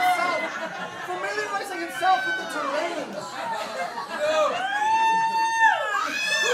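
People's wordless vocal sounds, with a long high note held from about four and a half seconds in that falls away just before the end.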